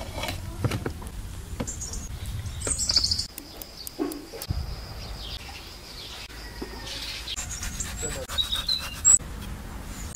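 Scattered clicks and knocks of cooking pots and utensils, with brief high bird chirps at times and a short laugh near the end.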